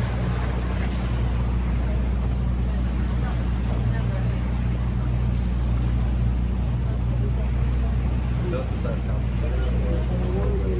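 A small motorboat's engine running steadily at cruising speed, a constant low hum heard from on board, with the rush of water along the hull.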